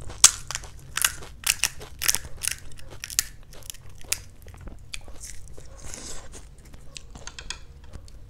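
Close-miked crunching of crisp, hollow fried pani puri (golgappa) shells: a run of sharp crackles, loudest and densest in the first three seconds, then sparser, with a few more crackles near the end.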